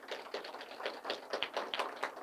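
Scattered applause from a small audience: a few people clapping unevenly, several claps a second.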